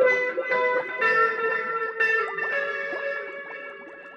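Amplified electric guitar played alone: picked notes and chords ringing on, several strokes a second, the playing growing quieter toward the end.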